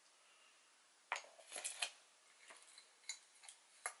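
A straw pushed through the wooden lid of a glass drinking jar packed with dissolvable packing peanuts: short rustles and a few sharp clicks, starting about a second in.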